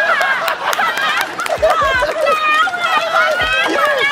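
Several people laughing and shrieking at once, their high voices overlapping, with a few sharp taps mixed in.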